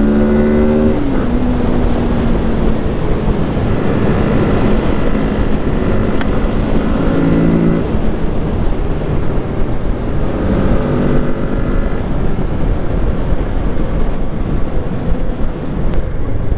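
Kawasaki Z650's parallel-twin engine running at highway speed, heard under heavy wind rush on the helmet-mounted microphone. Its pitch drops about a second in, then holds steady.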